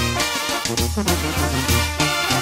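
Mexican banda wind music: brass instruments playing a melody over a low, stepping bass line.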